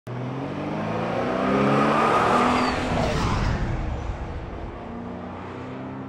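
A car engine revving and passing by, with a rush of tire and air noise that peaks about two seconds in and then fades away.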